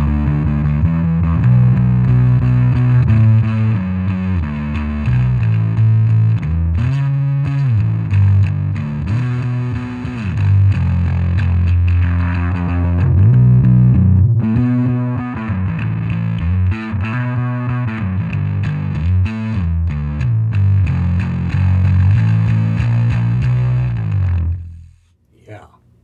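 Electric bass guitar played through a Sovtek Deluxe Big Muff Pi fuzz pedal, with its mids EQ switched in and set at noon: a thick, distorted bass riff that stops near the end.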